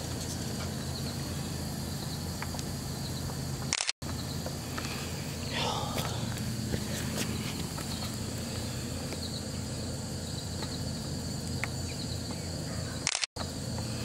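Steady outdoor background noise: a low hum with a thin, steady high-pitched drone. The sound cuts out for an instant twice, about four seconds in and near the end.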